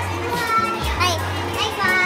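Several young voices talking and calling out over one another: lively student chatter.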